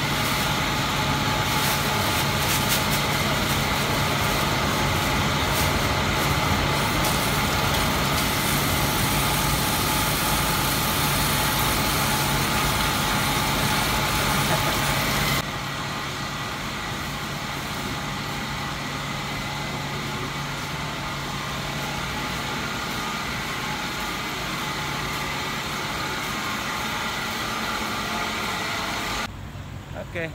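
A steady mechanical hum with a fixed low drone under a broad hiss. About halfway through the hiss and hum drop abruptly to a lower level and carry on steadily.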